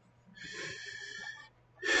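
A man drawing a breath, a faint airy inhale about a second long.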